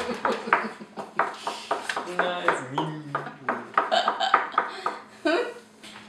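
People laughing and talking indistinctly around a table, with small knocks and clicks among the voices.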